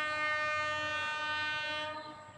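Train horn sounding one long, steady blast on a single note rich in overtones, stopping just before the end.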